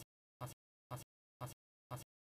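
A steady repeating beat of short, identical hits, about two a second, with silence between each.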